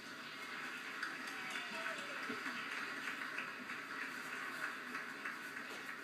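Congregation applauding, a dense patter of many hands, played back through a television's speaker.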